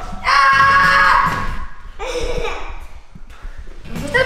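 A person's shrill, high-pitched scream held for about a second, followed about two seconds in by a shorter cry that falls in pitch.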